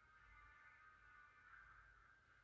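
Near silence, with a faint, steady high-pitched drone.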